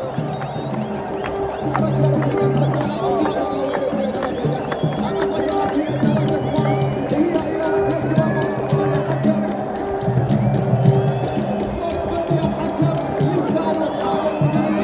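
Music with sustained low notes that start and stop, playing over the chatter of a large crowd.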